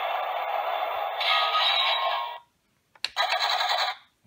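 Electronic battle sound effect from a toy tank's small built-in speaker, tinny and loud: one long burst that cuts off about two and a half seconds in, then a second shorter burst near the end.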